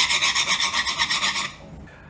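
A metal hand tool scraped hard back and forth across the surface of a laminate (seamless) floor sample as a scratch test of its wear resistance. It makes a fast, even rasping that stops about one and a half seconds in.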